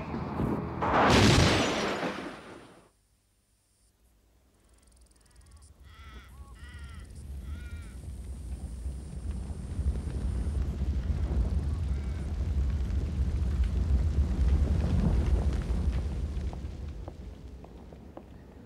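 A car crash: a loud sudden burst of sliding and impact in the first two seconds or so, then about a second of near silence. After that come a few short wavering high calls, and a low rumbling drone that swells and then fades near the end.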